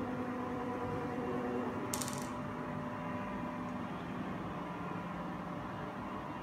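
Zeiss Contura G2 coordinate measuring machine moving its probe head under joystick control: a steady hum from its axis drives, which fades about halfway through. About two seconds in there is one brief, crisp click-like rattle.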